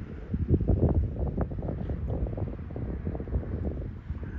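Wind buffeting the microphone: an uneven low rumble that swells about half a second in and stays gusty.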